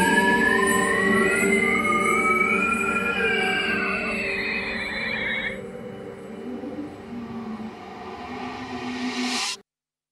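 The closing bars of a drum and bass track with no drums left: sustained synth tones sliding slowly upward, thinning out after about five seconds. A swell of hiss follows and cuts off abruptly just before the end.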